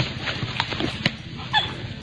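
Javan dholes (Asian wild dogs) feeding on a deer carcass, with a few sharp clicks and one short, squeaky call about a second and a half in.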